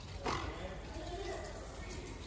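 A person's drawn-out shout, lasting about a second.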